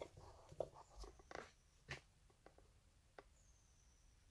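Near silence, with a few faint, scattered clicks and light knocks from something being handled.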